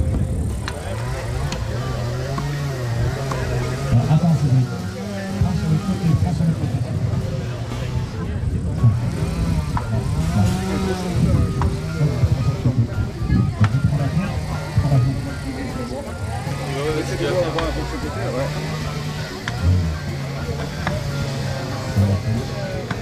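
Chainsaw cutting into the base of a standing tree trunk, its engine revving up and down every second or two under load.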